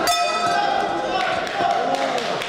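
A crowd of spectators shouting and talking in a large hall, with a brief sharp ringing sound right at the start.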